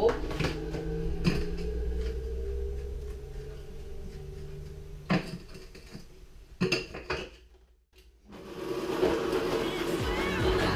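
A few sharp clinks and knocks of a metal spoon and plastic tub being handled at a blender jug, over a steady low hum. Background music comes in near the end.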